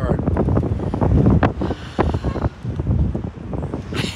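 Wind buffeting the microphone of the onboard camera in gusty, rumbling swells as the slingshot ride capsule swings and bounces through the air.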